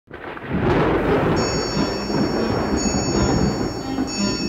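Thunder rumbling over heavy rain, fading in over the first half second, with high steady tones coming in about a second and a half in.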